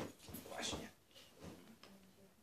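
Cardboard LP record sleeve being handled and turned over: a faint tap, then soft rustling and scraping of the sleeve against the hands.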